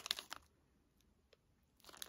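Plastic packaging crinkling briefly as it is handled, fading within half a second. Near silence follows with a couple of faint clicks, then a little more rustling near the end.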